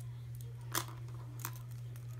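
Small plastic toy fence pieces and their wrapping being handled: light rustling with two sharper clicks, one under a second in and one about a second and a half in, over a steady low hum.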